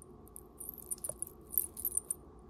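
Small metal dangles, chain links and stone beads on a vintage brass-tone jewelry piece jingling and clicking against each other as fingers handle it. A run of light, high tinkles starts about half a second in and gets busier toward the end.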